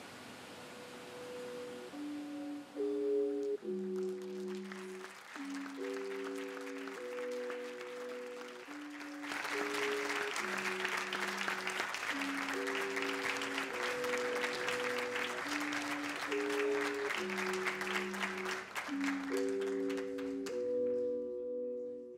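Slow end-credits music of steady sustained chords, changing about once a second. About nine seconds in, an audience starts applauding over the music and keeps clapping until shortly before the end, while the chords carry on.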